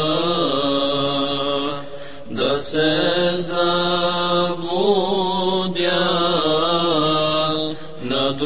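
An ilahi (Islamic devotional song) sung in long, drawn-out notes with wavering melismatic ornaments over a steady low drone, with a short break about two seconds in.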